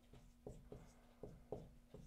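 Dry-erase marker writing on a whiteboard: about five faint, short strokes over a low, steady room hum.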